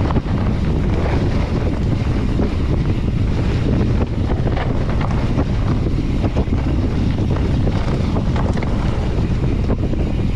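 Wind buffeting the microphone at downhill speed, over the rumble of mountain-bike tyres rolling on a dirt trail, with frequent short clicks and rattles from the bike.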